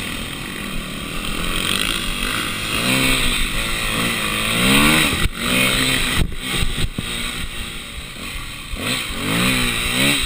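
Yamaha WR250 dirt bike engine under way on a dirt trail, revving up and easing off as the rider works the throttle. The pitch climbs in rising swells about three seconds in and again near the end.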